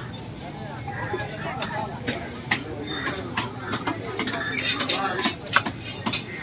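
A heavy fish-cutting knife chopping through fish on a wooden stump block: sharp knocks at an irregular pace, about ten in all, with people talking in the background.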